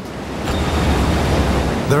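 Large ocean wave breaking: a steady rushing roar of surf that swells slightly.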